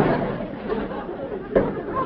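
Sitcom audience laughter, dying away after a punchline, with a short sharp knock about one and a half seconds in.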